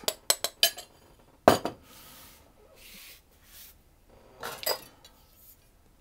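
Glass bowls and a spoon knocking and clinking as flour and icing sugar are tipped into a mixing bowl, the loudest knock about one and a half seconds in, with a faint soft hiss of powder pouring between the knocks.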